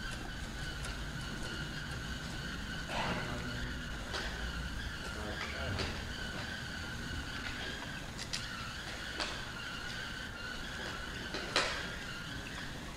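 Quiet background of an old broadcast recording: a steady hiss with a faint high whine, and a few faint short sounds about three seconds in and near the end.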